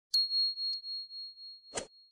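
Notification-bell 'ding' sound effect for a subscribe button: one high bell tone struck just after the start, ringing on and slowly fading. A short click comes about two-thirds of a second in, and another click near the end.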